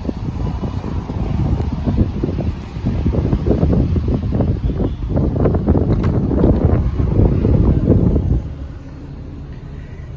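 Wind buffeting a handheld phone microphone: a loud, gusty low rumble that drops off sharply about eight and a half seconds in.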